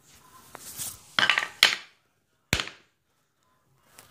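Hammer tapping brad nails that didn't go in flush into a wooden frame. There are a few light taps in the first two seconds, then one sharper, louder knock about two and a half seconds in.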